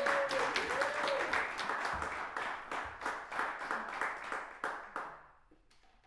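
Audience applauding after a reading, with a brief voice heard over the clapping at the start. The applause dies away about five seconds in.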